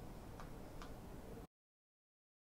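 Faint steady background noise with two soft clicks less than half a second apart, then the sound cuts off suddenly to dead silence as the recording ends.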